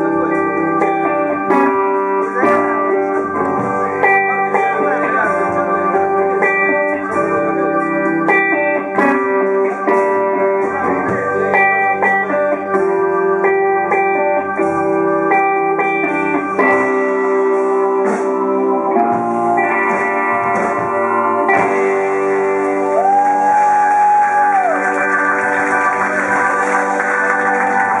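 Live blues band playing: electric guitar leading over bass, drums and keyboards, with a long held note that bends near the end.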